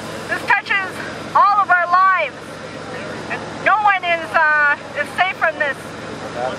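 A person's voice amplified through a handheld megaphone, in short phrases that rise and fall, with no words the recogniser could pick out.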